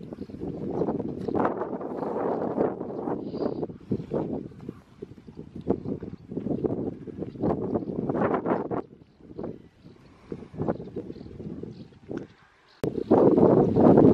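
Wind buffeting the microphone in irregular gusts, easing off for a few seconds, then a sudden jump to louder, denser wind noise near the end.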